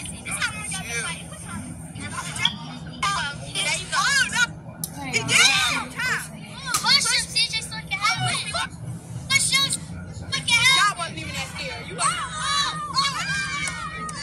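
A group of children shouting and yelling over one another in excited, overlapping bursts.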